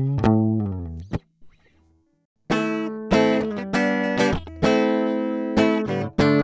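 Guitar recorded direct through a DI box, played back in picked notes and chords. A phrase through the box's cheap stock transformer dies away about a second in; after a brief silence the guitar comes in again at about two and a half seconds, now heard through the swapped-in CineMag transformer.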